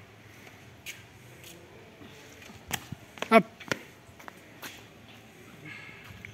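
A man shouting "up" once, a push-up command, about three seconds in. A few short sharp clicks are scattered through the rest over a low steady background.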